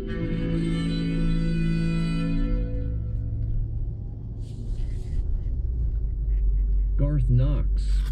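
The last held chord of a bowed viola d'amore, rich in ringing overtones, dies away over the first three seconds. A low steady hum follows, with a brief hiss near the middle, and a man's voice starts about a second before the end.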